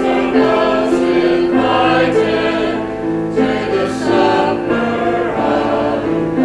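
A choir singing a hymn in held notes over a low sustained accompaniment.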